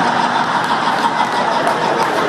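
An audience laughing together in a large hall: a steady, even wash of many voices, with a man's laugh among them.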